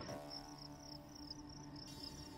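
Crickets chirping, added as a sound effect: a faint, steady run of evenly spaced high chirps over a low steady hum.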